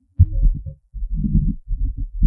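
Microphone handling noise: low thumps and rumbling as a hand grips and adjusts a microphone on its stand, in several bursts.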